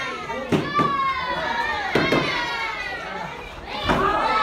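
Several karateka sparring and shouting overlapping kiai, drawn-out yells that fall slightly in pitch, with a few sharp thuds of strikes and foot stamps on the mat.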